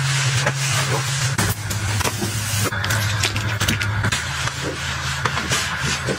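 Flat microfiber mop sliding back and forth over a laminate floor, a steady swishing rub with light clicks as the mop head turns, over a steady low hum.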